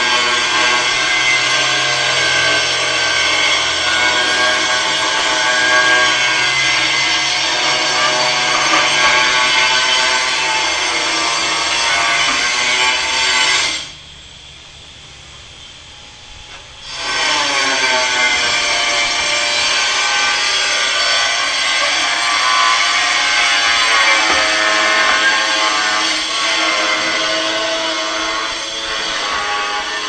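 A handheld electric power tool running under load, a steady whine with many overtones. It cuts off about halfway through, stays off for about three seconds, then starts again, its pitch rising as it spins back up.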